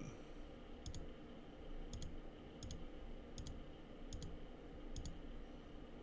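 A computer mouse button clicked about six times, roughly once a second. Each click is a quick, faint double tick of press and release.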